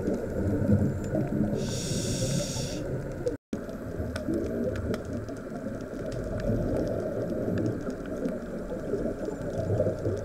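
Underwater scuba-dive sound heard through a camera housing: a continuous low, muffled rumbling churn of water and the diver's exhaled bubbles. About two seconds in comes a short high hiss, like a breath drawn through the regulator.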